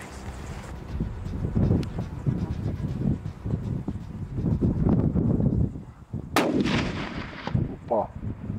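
A single hunting-rifle shot about six seconds in: a sharp crack followed by about a second of ringing echo. Before it there is a low, uneven rumbling background.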